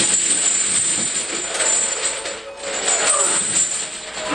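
Steel chains hanging from a loaded barbell clink and rattle as the lifter squats, over continuous background music.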